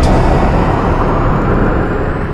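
Loud, deep rumble of an explosion dying away slowly, with no clear pitch.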